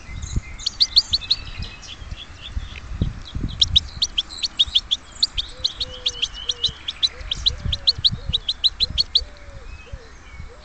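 Nightingale singing: runs of short, sharp, high notes repeated about five times a second, a brief run near the start and a long one through the middle. A lower, repeated cooing call joins in the second half, over a low wind rumble.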